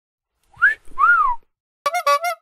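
Two whistled notes: a short rising one, then a longer one that rises and falls. Near the end a different, buzzier pitched sound begins.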